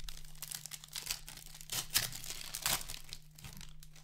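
Clear plastic wrapper of a hockey card pack crinkling and tearing as it is pulled open by hand, in a run of quick crackles, loudest about two seconds in.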